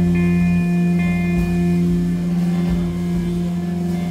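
Live free-improvisation band music: a long, steady electric guitar note rings through, with its overtones held and a few higher notes coming and going above it.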